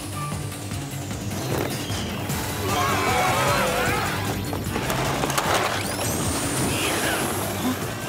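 Action background music on a held low chord, under a dense rush of crashing and rumbling sound effects. A quick rising whoosh comes about six seconds in.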